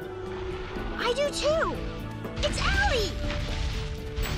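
Cartoon soundtrack: background music with sustained held notes, over which voices call out in rising-and-falling glides twice. Heavy low thuds come in during the second half, the footfalls of a huge dinosaur.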